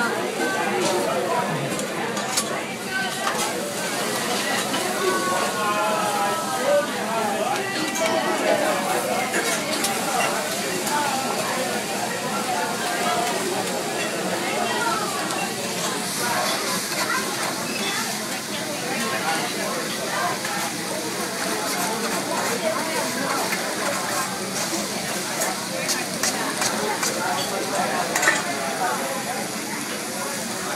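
Vegetables and noodles sizzling on a hot teppanyaki griddle, with scattered sharp clicks, more of them in the second half, and people's voices talking over the frying.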